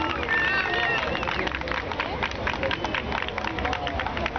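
Crowd of spectators: many overlapping voices and a few high calls in the first second, with a dense patter of short, sharp claps running through the rest.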